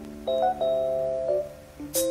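A late-1970s Israeli record played back from a laptop: the original recording that a hip-hop beat samples. Held chords change a few times over a steady low bass note, with a brief dip in loudness near the end.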